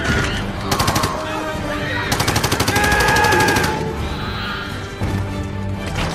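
Automatic rifle fire in rapid bursts: a short burst about a second in, then a longer burst of about a second and a half, over a film score.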